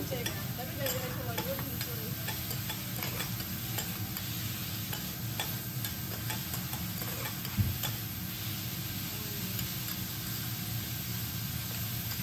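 Food sizzling on a hot teppanyaki griddle while metal spatulas scrape and click against the iron plate, turning bean sprouts and vegetables. One louder thump comes about seven and a half seconds in.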